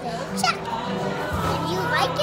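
A young girl talking, with music playing in the background.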